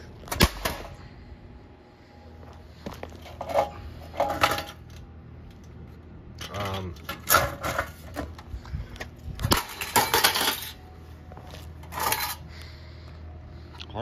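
An unused DirecTV receiver box being smashed against concrete pavers: a series of hard crashes with plastic and metal parts cracking and clattering as the casing breaks apart and the circuit board comes out.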